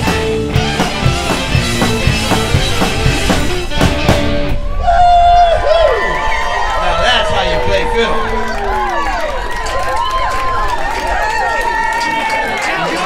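A live country-rock band with fiddle, electric guitars and drums plays the final bars of a song and stops abruptly about four and a half seconds in. The audience then cheers and whoops.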